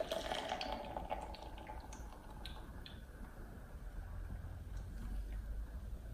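Carbonated cider poured from a can into a glass, the pour stopping about a second in, followed by faint crackling ticks from the fizzing foam head that thin out over the next couple of seconds.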